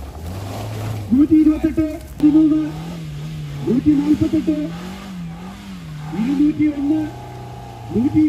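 An off-road 4x4's engine working through mud, its pitch rising and falling as the throttle is worked, with voices over it.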